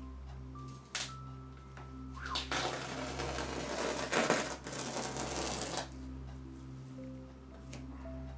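Masking tape being peeled off a painted canvas: a sharp click about a second in, then a ripping rasp for about three seconds from around the middle. Soft background music with gentle mallet-like notes plays under it.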